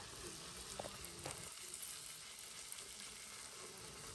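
Breaded cabbage cutlet shallow-frying in hot oil: a faint, steady sizzle, with a couple of light pops in the first second and a half. The coated side is browning in the oil.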